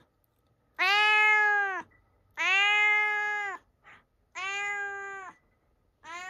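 Domestic cat meowing three times, long drawn-out calls of about a second each with pauses between; the cat is a little startled, its back fur raised.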